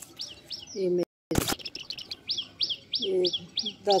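A small bird chirping over and over, a run of short falling chirps about three a second. A voice is heard faintly in the background, and there is a brief dropout and a sharp click about a second and a half in.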